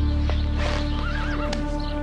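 Background music score with sustained tones, and a horse neighing over it about a second in.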